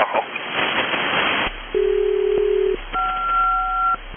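SELCAL call over HF aeronautical single-sideband radio, alerting one aircraft's crew. After about a second and a half of radio hiss, a steady low tone sounds for about a second, then after a short gap a higher two-tone chord sounds for about a second.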